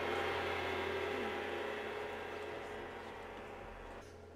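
Large-hall room noise after the orchestra stops: a soft, even murmur over a steady low hum, fading slowly away.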